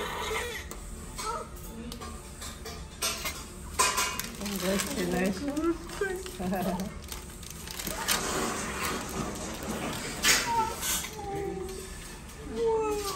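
Indistinct voices with music under them, broken by a few sharp clinks and clicks about three to four seconds in and again around eight and ten seconds.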